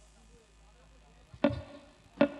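Near silence, then one sharp, pitched struck note about one and a half seconds in: the first note of a live dangdut band's song intro.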